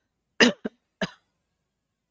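A woman coughing a few times in quick succession: short sharp coughs about half a second and a second in.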